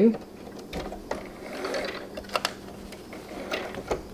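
A few scattered clicks and knocks from a Brother MZ53 sewing machine being worked by hand, with the hand wheel turned to raise the needle and the fabric pulled out from under the presser foot; the motor is not running.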